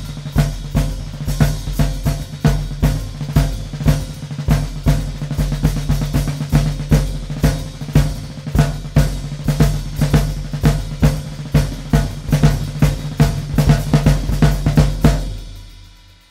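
Old Slingerland 16-by-16-inch marching field drum, refitted with new heads and snares, played with hickory sticks in a steady groove. A 24-by-14-inch Slingerland marching bass drum, converted for drum-set use, and a hi-hat splashed with the foot play along. The playing stops shortly before the end and the drums ring out.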